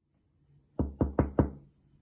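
Four quick knocks on a door, about a fifth of a second apart, announcing a visitor.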